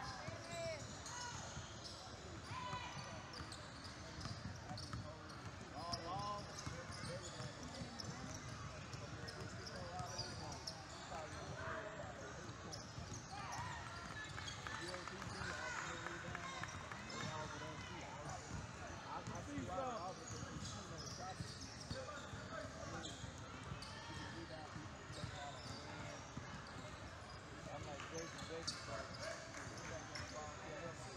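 A basketball bouncing on a hardwood gym floor during play, amid scattered shouts and chatter from players and spectators.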